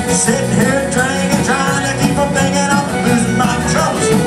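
Live country band playing a song with a steady drum beat, guitar and a male singer.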